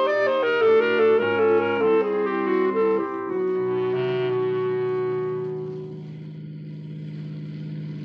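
Radio-drama music bridge between scenes: a short orchestral cue with brass and woodwinds playing a moving melody, settling into a held chord that fades out about six seconds in, leaving a low steady hum.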